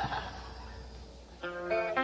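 Guitar noodled between songs by a rock band on stage: a faint note fades away at the start, then a chord rings out steadily about one and a half seconds in.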